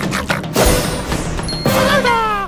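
Cartoon soundtrack: background music with a rapid run of crunchy, smacking eating sound effects as a chicken drumstick is chomped. Near the end a pitched tone slides downward.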